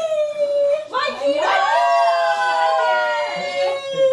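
People's voices holding a long, drawn-out note that slowly falls in pitch, broken once about a second in, with a second voice joining in the middle.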